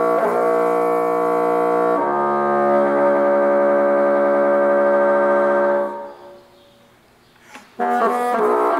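Solo bassoon sustaining long, reedy notes: one held note changes to another about two seconds in, which is held until about six seconds and then fades into a short pause before the next note begins at the end.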